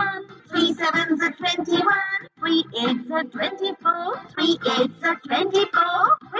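A child's voice singing the three-times table, each line repeated, over a backing music track.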